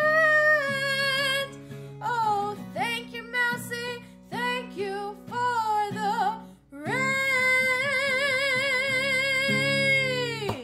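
A woman singing while strumming an acoustic guitar, with several short phrases and then a long held note with vibrato near the end.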